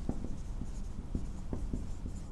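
Whiteboard marker writing on a whiteboard: a string of short, irregular strokes and taps as letters are drawn.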